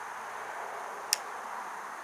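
One sharp click from the Beretta 92FS pistol being handled about halfway through, over a steady background hiss.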